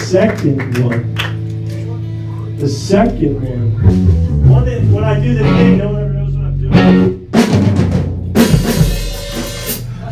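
Electric guitar and bass being tuned and tested: held low notes ring out one after another, with scattered drum hits. A loud cymbal crash comes near the end.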